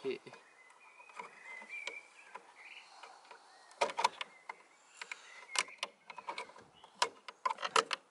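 Small plastic clicks and taps from hands working a car wing mirror's indicator unit, coming in short clusters about four, five and a half, and seven to eight seconds in.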